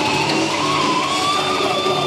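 Live death metal band playing through a loud PA: distorted electric guitars holding sustained notes, with a high ringing tone that slowly rises in pitch.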